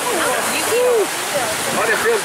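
Rushing, churning water of a river-rapids raft ride, with riders' voices calling and chattering over it.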